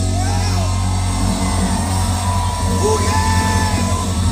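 Live rock band on stage holding a low sustained chord, with voices yelling and whooping over it.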